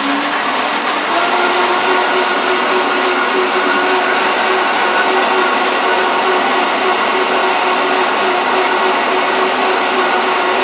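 Vitamix blender motor running, blending soaked cashews, lemon juice and agave into a cream. Its pitch climbs a little about a second in, then holds steady.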